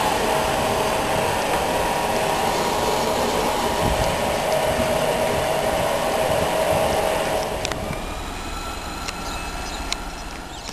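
A train of yellow GLV de-icing vans rolling past close by, steady wheel-on-rail noise with a steady tone running through it. The sound drops and fades after about seven and a half seconds as the train moves away.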